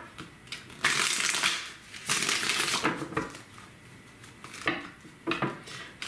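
Tarot cards being handled and shuffled: two rustling bursts of about a second each, starting about a second in, then a few shorter card rustles near the end.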